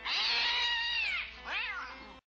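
A cat meowing twice: a long meow that drops in pitch at its end, then a shorter one, over faint music.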